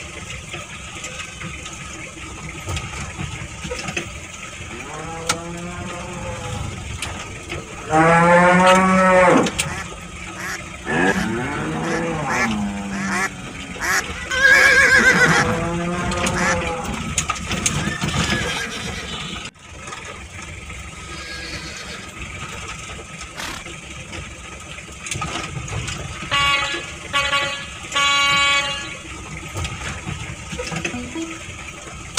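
Cattle mooing about four times, each a long drawn call, the loudest about eight seconds in. Near the end come a few short horn toots.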